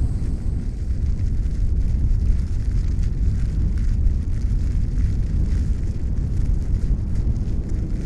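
A steady low rumble without music or pitch, its sound lying mostly in the deep end.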